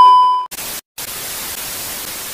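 A loud, steady single-pitch test-tone beep that cuts off about half a second in, followed by the even hiss of TV static, with a brief gap just before the first second.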